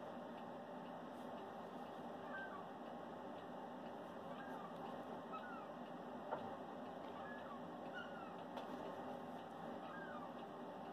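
Faint short bird calls, a dozen or so brief chirps scattered through, over a steady room hiss, with one soft knock about six seconds in.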